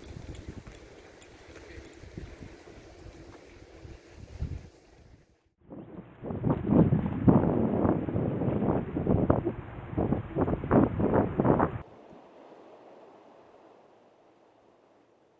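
Wind buffeting the microphone outdoors by the sea, a low rumble at first, then louder gusts for about six seconds from the middle on, which stop suddenly near the end and leave a faint hiss.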